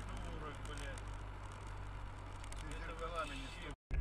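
Steady low drone of a car driving, heard from inside the cabin, with people's voices over it. The sound cuts out abruptly just before the end.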